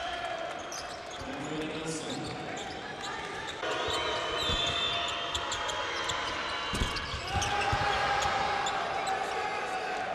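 Basketball game sound from the arena: a ball bouncing on the court with short knocks, over crowd noise. The crowd gets louder a little over a third of the way in.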